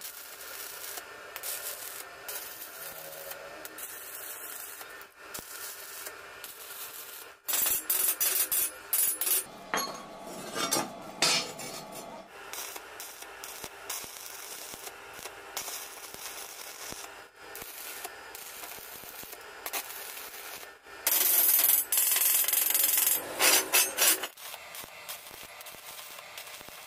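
Stick (arc) welding on steel angle iron: the arc crackles and hisses in stretches, loudest about a third of the way in and again near the end.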